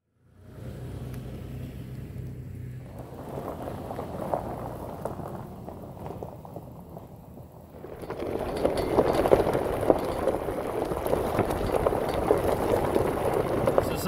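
Toyota 4Runner driving on a dirt forest trail: a low engine hum at first, then from about eight seconds in a louder rumble and crackle of the tyres on the dirt and gravel.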